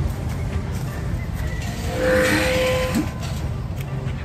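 A rooster crowing once, about two seconds in: a single held call lasting about a second, over a steady low rumble.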